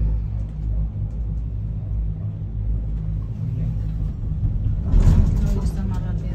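Steady low rumble of a cable-car gondola cabin heard from inside as it travels past a support tower. About five seconds in it turns louder and rattly, as the cabin runs through the tower.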